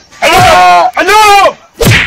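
A person's loud, distorted cries or yells without words: three rising-and-falling wails, with a sharp thump just before the third.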